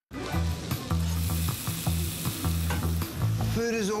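Food sizzling in a frying pan, a steady hiss, over background music with a repeating bass line.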